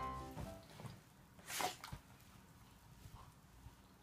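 Background piano music dies away in the first second. About a second and a half in there is one short burst of noise, then faint room tone.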